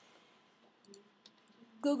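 A few faint computer-mouse clicks around the middle, as a project is selected in a file list.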